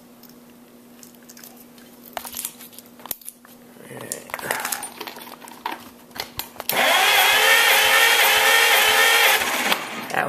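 A Chrysler Crown flathead six marine engine is cranked over on its starter for about three seconds near the end, as a compression test. The cylinder reads only about 65 psi against the roughly 90 psi wanted, low compression from a worn engine. Before the cranking comes a faint steady hum and the clicks and rustles of the tester being handled.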